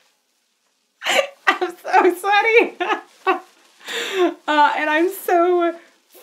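About a second of silence, then a woman talking through laughter.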